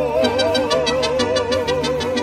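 Live mariachi music: singers and violins hold one long note with a wavering vibrato over a steady rhythm accompaniment.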